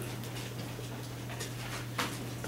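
Dry-erase marker writing on a whiteboard, with faint scratchy strokes, over a steady low room hum.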